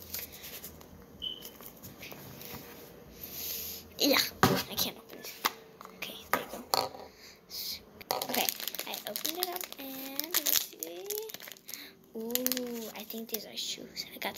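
A small plastic wrapper crinkled and torn open, in a run of sharp crackles and clicks, loudest about four seconds in and again through the second half. From about nine seconds in, a child's wordless humming runs under the crinkling.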